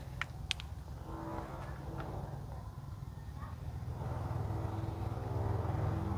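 A low, steady engine-like hum that grows slightly louder over the last couple of seconds, with a few faint clicks in the first second.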